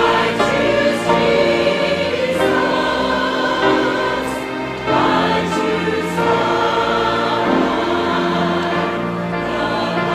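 Mixed church choir of men and women singing, holding long sustained chords that change every second or so.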